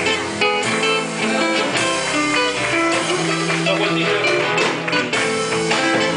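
Live band playing an instrumental passage of a folk song, led by plucked and strummed acoustic guitars, with no singing.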